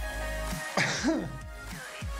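Background music with a low bass line throughout. About a second in, a person briefly clears their throat with a short cough.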